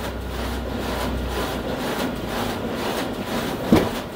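Steady running noise of print-shop machinery, with a low hum that drops away after about a second and a half. A single knock near the end.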